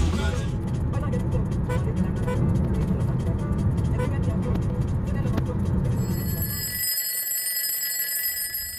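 Steady road and engine rumble inside a moving car. Near the end, an alarm-clock ringing sound effect comes in as a set of steady high tones, and the rumble cuts off suddenly.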